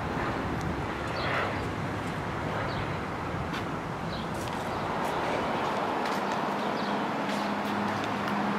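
A vehicle engine running steadily, with a few faint short chirps and clicks over it.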